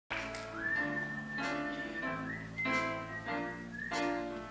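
A band playing the introduction of a rock-musical song: chords struck about every second and a quarter, under a high melody line that holds long notes and slides up into each one.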